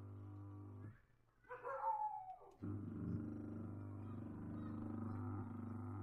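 Washing-machine wash motor running on the timer with a steady electric hum. The hum cuts out about a second in and starts again about a second and a half later, as the wash timer pauses the motor and reverses it. In the gap a brief sound falls in pitch.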